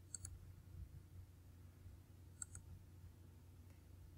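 Near silence with faint computer mouse clicks: a quick pair just after the start and another pair about two and a half seconds in.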